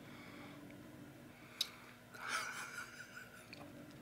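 A person quietly sipping from a glass and tasting: a small click about one and a half seconds in, then a soft breathy sound lasting under a second.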